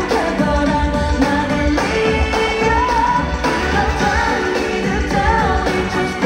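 A woman singing into a handheld microphone over a pop backing track with a steady bass beat, amplified through a concert PA.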